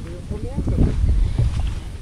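Wind rumbling on the microphone, strongest about a second in, with a few short rising voice-like glides near the start.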